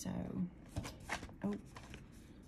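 Paper of a spiral-bound sketchbook being handled: several short rustles and clicks. Brief wordless voice sounds come at the start and again past the middle.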